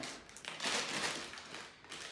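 A packet of dried sage crinkling as it is handled and worked open, a dry rustle strongest from about half a second to a second and a half in.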